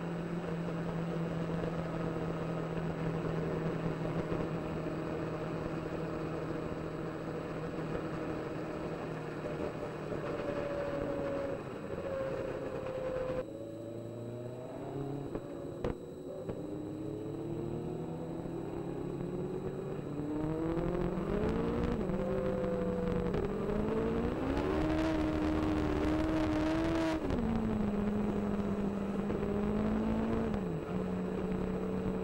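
Onboard sound of a Legends race car's Yamaha motorcycle engine under racing load. It holds a steady note, then eases off about 13 s in, climbs in stepped rises of pitch through the gears, and drops back to a steady note near the end.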